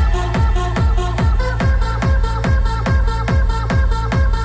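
Loud techno track with a steady four-on-the-floor kick drum at about two beats a second, under a repeating stepped synth riff.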